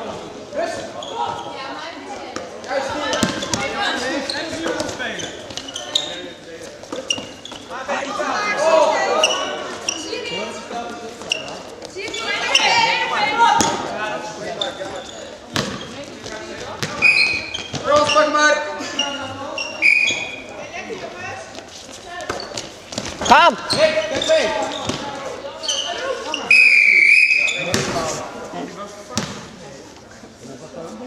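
Indoor korfball play in a sports hall: thuds of the ball and players' footfalls on the court, with indistinct shouting voices, all echoing in the hall.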